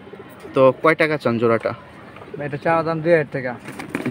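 Domestic pigeons cooing close by in two bouts of about a second each, the second starting about halfway through.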